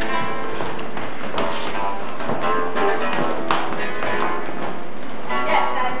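Music with held, pitched notes and a few sharp taps scattered through it.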